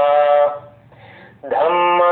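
A man's voice chanting a Buddhist chant in long, drawn-out held notes. It breaks off for about a second in the middle, then comes back on a new held note.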